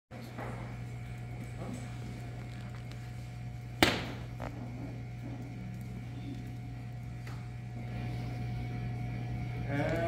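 Room tone with a steady low hum and faint murmur, broken by one sharp knock about four seconds in. Right at the end a man's voice begins singing unaccompanied.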